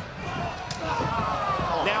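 Dull thuds of wrestlers striking and hitting the canvas in the ring over steady arena noise, with a voice calling out about a second in.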